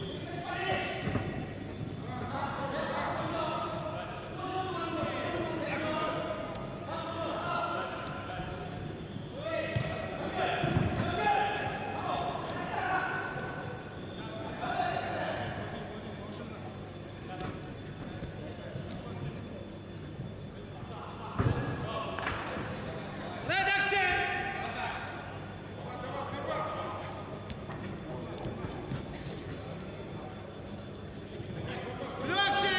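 Voices calling out during a wrestling bout, with a few dull thuds of bodies on the mat. There is one sharp thud about two-thirds of the way through and a loud shout just after it.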